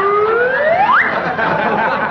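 A single whistle rising steeply in pitch over about a second, heard over the chatter and laughter of a theatre audience.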